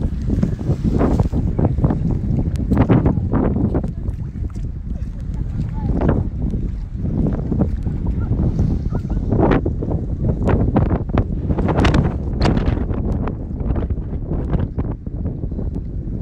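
Wind buffeting a phone's microphone: a loud, gusting rumble that rises and falls irregularly throughout.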